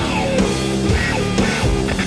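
Live rock band playing an instrumental passage with no vocals: electric guitar over bass and a drum kit, with regular drum hits.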